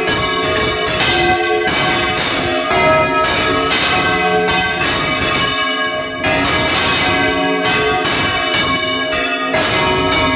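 Four church bells swinging full circle on counterweighted yokes, Valencian-style volteo. Their strikes overlap into a continuous, loud clangour of long-ringing tones, heard close up inside the belfry.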